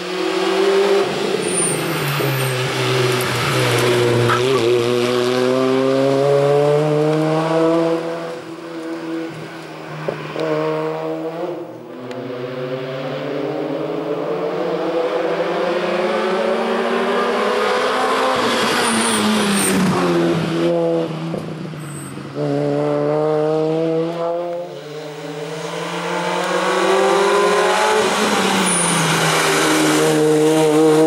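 Peugeot 106 hill-climb race car's engine pulling hard under full throttle, its pitch climbing through each gear and dropping back at each gear change, with lifts and downshifts for the bends. Several passes are cut together, each starting abruptly.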